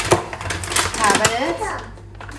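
Speech: a voice talking in a small kitchen, with a sharp click just after the start.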